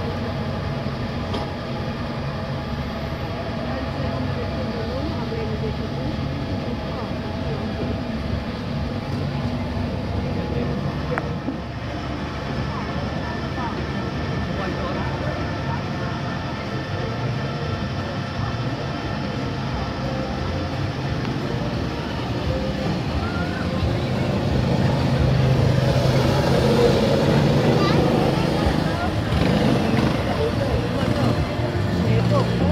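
Europa-Park monorail train running along its elevated track: a steady drive hum over rolling noise, with indistinct voices mixed in. It grows louder over the last few seconds.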